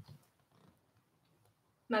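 Near silence: quiet room tone after a brief faint noise at the start, then a woman begins speaking just before the end.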